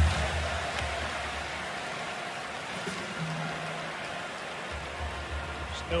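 Music over an arena's PA system with a low beat, above a steady hubbub of crowd noise. The bass drops out for a couple of seconds in the middle.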